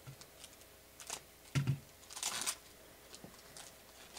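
Trading cards being handled and slid against each other: a few light clicks and taps, a soft thump about one and a half seconds in, and a brief sliding rustle just after.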